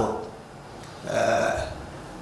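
A man's brief low vocal sound about a second in, between spoken sentences.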